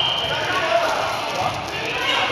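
Gym hubbub at a dodgeball game: several players' voices talking and calling out, with rubber balls bouncing and thudding on the wooden floor, all echoing in the hall.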